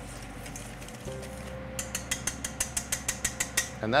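A metal utensil beating garlic paste in a stainless steel mixing bowl. It strikes the side of the bowl in a fast, even run of sharp clicks, about nine a second, starting a little under two seconds in.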